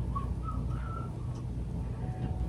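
Three or four faint, short whistle-like notes in the first second and a half, each a little higher than the one before, over a steady low hum.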